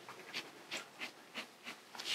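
Black pen sketching light, short strokes on paper: about five faint scratches.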